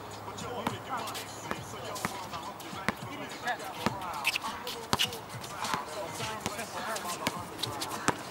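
A basketball bouncing on an outdoor hard court, dribbled in irregular runs of sharp bounces, with players' voices in the background.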